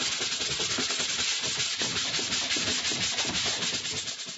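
A sanding block rubbed back and forth over the kayak's plastic hull in quick, even strokes, roughening the plastic so the glue for the transducer pad will stick.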